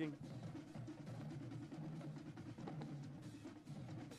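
Faint drumming, snare and bass drums playing a steady cadence.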